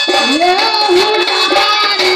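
Live singing through a microphone and PA: one voice glides up in pitch early on and then holds its line, with sustained keyboard notes underneath.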